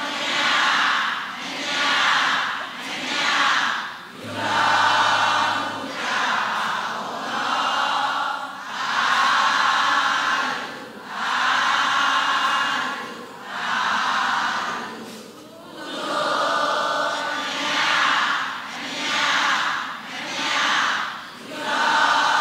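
Many voices chanting a Burmese Buddhist verse of loving-kindness and merit-sharing in unison. It goes in a sing-song rhythm of short phrases, each about one to two seconds long, with a short pause between.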